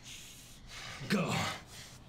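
A person's sharp gasp about a second in, falling in pitch and trailing off in a breathy sigh.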